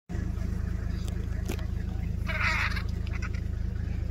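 Vehicle engine idling steadily with a low, even hum. About halfway in there is a short harsh squawk, typical of vultures squabbling over a carcass.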